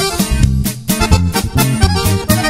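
Instrumental norteño band music: an accordion playing the melody over strummed guitar and a bass line, in a steady, even beat.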